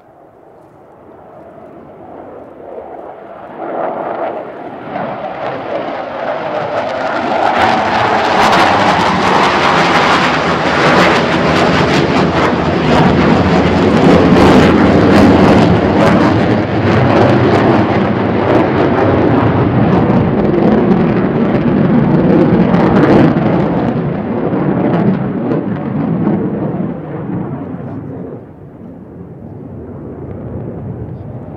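Twin-engine F-15J Eagle fighter jets making a display pass: a jet roar builds over the first several seconds, stays loud and crackling for about fifteen seconds, then fades away near the end.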